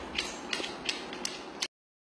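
A Siberian husky's claws clicking on a hardwood floor as she walks, several sharp irregular ticks, then the sound stops abruptly shortly before the end.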